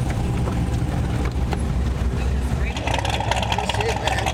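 Low, steady drone of the Dodge Charger's stroked 392/426 Hemi V8 and road noise heard inside the cabin while cruising. About three seconds in the drone drops away and a different, higher steady sound takes over.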